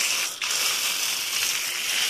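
Water spraying from a hose-end foam gun onto a pickup truck's side panel: a steady hiss, with a brief break about half a second in.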